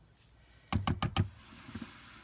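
A wire whisk and a plastic mixing bowl being handled: a quick run of about five knocks a little under a second in, as the batter-covered whisk is tapped against the bowl, then a soft scraping as the bowl is slid along the countertop.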